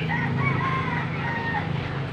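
A rooster crowing once, a single drawn-out call of about a second and a half, over a steady low hum.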